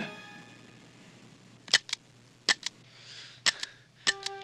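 A scuffle: three pairs of sharp cracks, each pair a fraction of a second apart, coming about every three-quarters of a second, with a brief rustle between the second and third pair.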